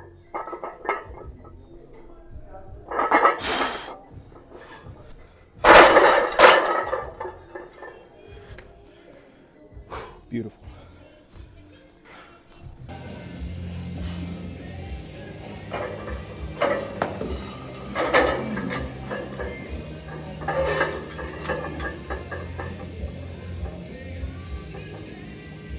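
Two loud, sudden sounds a few seconds apart as a loaded barbell squat set ends and the bar goes back into the rack, then background music with a steady beat from about halfway through.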